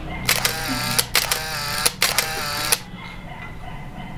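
A sound effect of three short pitched bursts, about a second apart, each starting and cutting off abruptly.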